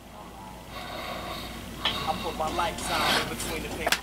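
A faint, indistinct voice, low and muffled, growing a little louder from about two seconds in.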